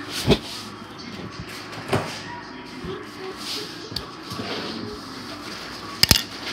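Handling noise on a tablet's microphone as it is held and moved: two sharp knocks, about a third of a second and two seconds in, and a lighter one near four seconds, with soft rubbing between.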